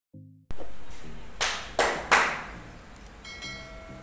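A cow's flank being slapped by hand three times in quick succession: sharp, loud pats about a third of a second apart. A short ringing chime follows near the end.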